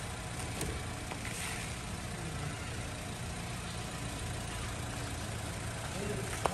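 Car engine idling steadily, an even low hum that doesn't change speed.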